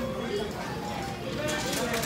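Restaurant dining-room background: indistinct voices at a distance with a few light clicks and clatter near the end.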